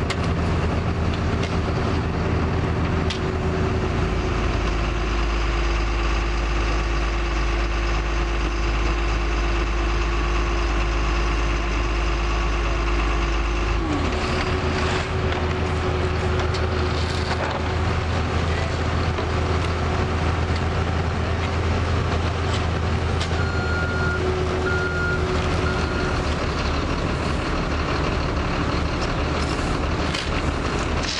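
Diesel engines of construction machinery, a mini excavator and an asphalt truck, running steadily, their engine note changing about halfway through. Three short high beeps sound about two-thirds of the way in.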